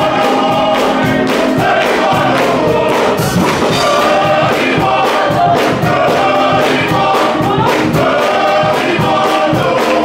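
Men's gospel choir singing in full voice, with a steady beat running under it.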